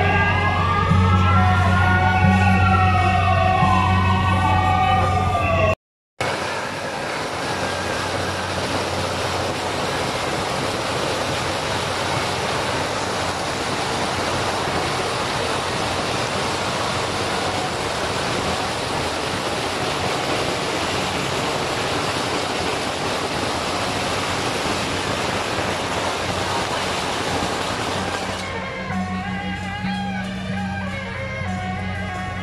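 Loud music with gliding melody lines over a steady low beat, then, after a sudden cut, a long, dense, unbroken crackle of firecrackers that thins near the end as music comes back.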